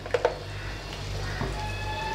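Fish curry simmering in a pan as sesame oil is poured in: a low, steady sizzle. Faint held tones join about halfway through.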